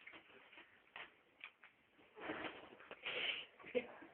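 A person sucking on a gobstopper: faint wet mouth clicks in the first second and a half, then two breathy, rustling swells in the second half.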